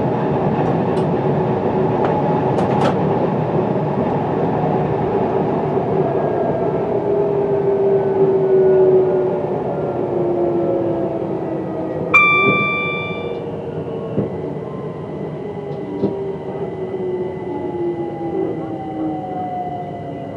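Electric multiple unit running on the rails, its motor whine falling slowly in pitch as the train slows down. A brief ringing tone sounds about twelve seconds in and fades away over about a second.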